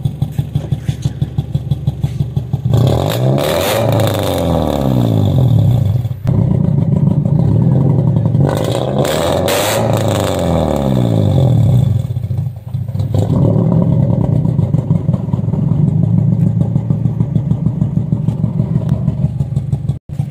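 Modified Toyota Corolla E140 with an HKS exhaust and a flame kit, idling with a steady pulsing beat, then revved in two bursts of blips, about 3 s in and again near 9 s, with sharp cracks from the exhaust as the flame kit fires flames. It settles back to idle for the second half.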